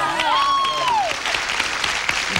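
A studio audience and contestants applauding steadily, with the end of a man's drawn-out word in the first second.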